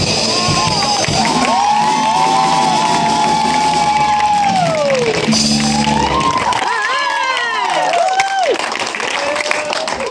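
Live rock band with electric guitars, bass and drums holding a final sustained ending, with audience whoops and cheers over it. The band stops about six and a half seconds in, leaving the crowd cheering and shouting.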